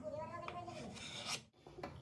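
Serrated cake knife rasping through a moist chocolate cake and scraping on the plate beneath, with a squeaky edge to it. It stops abruptly about one and a half seconds in, followed by a couple of light clicks.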